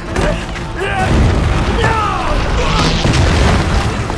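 Staged battle sound: a deep explosion boom rumbling on for a few seconds, with voices shouting and crying out and a music score underneath.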